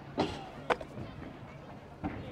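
A stunt scooter being swung around its handlebar gives two short knocks: a clack about a quarter second in and a sharper click half a second later. Then only faint background noise.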